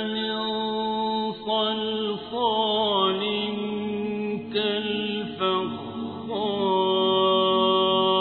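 A reciter's voice chanting the Quran in long, drawn-out melodic notes, each held for a second or more. A wavering ornamented turn comes about two and a half seconds in, and there are short breaks between phrases.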